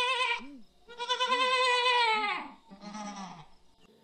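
A goat screaming: a run of loud bleating cries, the longest in the middle with its pitch dropping as it ends, then a shorter, fainter cry.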